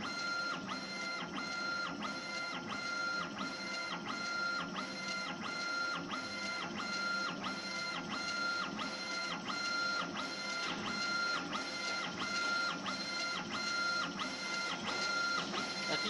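Laser engraving machine raster-engraving marble: the gantry's drive motors whine steadily as the laser head sweeps back and forth, with a brief break each time the head reverses, about two passes a second.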